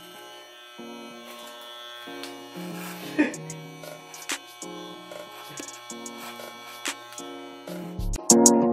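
Quiet background music, a slow melody of changing notes, over the steady buzz of corded electric hair clippers cutting hair.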